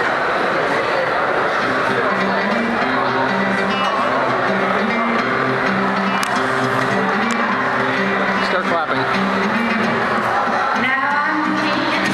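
Acoustic guitar strumming an intro of changing chords, with voices beneath it; a voice starts singing near the end.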